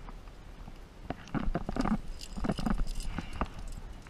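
An irregular run of short knocks and clinks as a climber moves up the rock: the trad climbing rack on his harness rattling and knocking against the crag. A low wind rumble sits on the microphone underneath.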